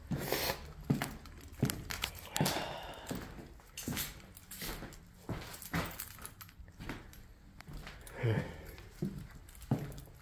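Footsteps and small knocks of someone walking across a bare, debris-strewn floor in a small room, uneven steps roughly one a second.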